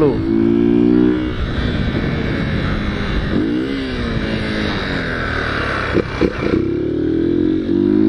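Motorcycle engine held at steady revs while the bike is ridden on its back wheel in a wheelie, with wind noise over the microphone. The revs drop and rise again once about three and a half seconds in, then are held steady again near the end.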